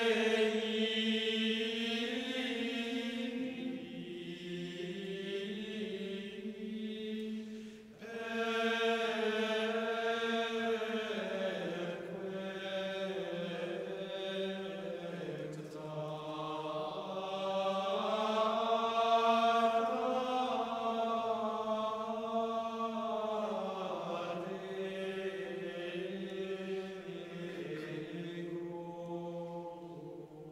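Men's choir singing Latin plainchant in unison, unaccompanied, in long melodic phrases with a short break for breath about eight seconds in; the phrase trails off near the end.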